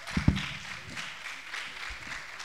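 Audience applauding, a steady patter of many hands clapping. A couple of low thumps come a fraction of a second in.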